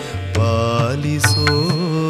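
Male voice singing a Kannada devotional song (dasara pada) in Carnatic style, holding and bending a long vowel, over a drone, with percussion strokes about once a second.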